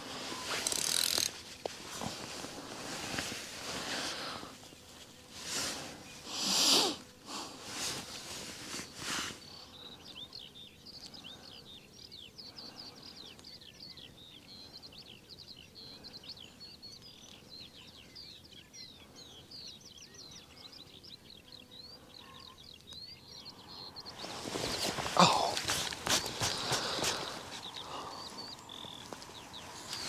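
Rustling and clicking handling noise close to the microphone, from hands working a fishing rod and reel, for about the first nine seconds and again near the end. In the quieter stretch between, small birds sing rapid high chirps in the background.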